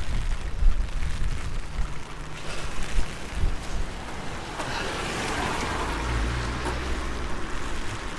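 Wind buffeting the microphone and rain on an umbrella, with a swell of tyre hiss about halfway through as a small car moves slowly along the wet road close by.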